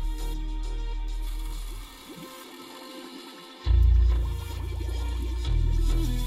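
Bass-heavy music played through a single 6.5-inch AD 2206 D2 subwoofer in a 3D-printed bass tube, heard inside a car from the passenger seat. The deep bass drops out for about two seconds near the middle, then comes back loud.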